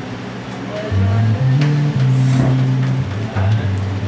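Violin-style electric bass guitar playing a line of held low notes, stepping from one pitch to the next, louder from about a second in.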